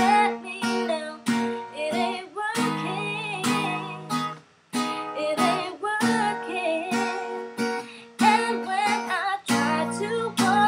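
A woman singing over her own strummed acoustic guitar, with a brief break in the playing about halfway through.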